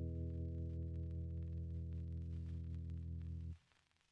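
The song's final chord, held as a steady, unwavering low tone on the accompaniment, then cut off abruptly about three and a half seconds in.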